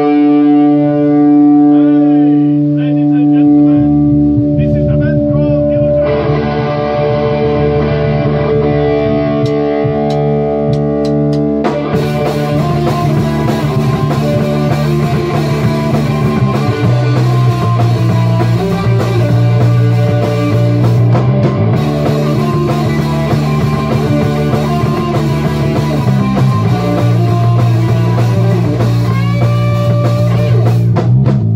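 A rock band plays with electric guitar, bass guitar and drum kit. The song opens on long held chords that change about six seconds in. The drums and cymbals come in at about twelve seconds, and the full band plays on from there.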